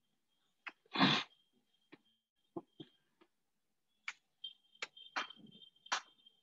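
Whiteboard being wiped clean with a handheld duster: scattered sharp taps and knocks, with one louder, longer burst about a second in.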